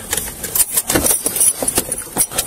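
Irregular rattling, clinking and rubbing of gear and clothing against a body-worn camera as the wearer shifts and climbs out of a car's driver's seat.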